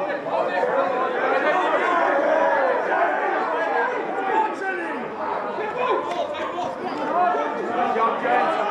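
Many voices at a rugby match shouting and calling over one another, none of it clear enough to make out as words, during open play and a ruck.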